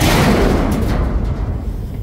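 A heavy piece of junk landing in a steel roll-off dumpster: one loud booming crash at the start, rumbling and ringing as it fades over about two seconds.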